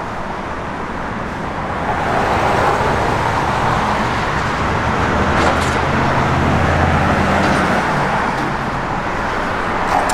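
Road traffic: a passing motor vehicle's engine hum and tyre noise swell over several seconds, then ease off.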